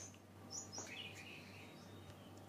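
Faint bird calls: a couple of short high chirps about half a second in, then a lower, wavering call about a second in.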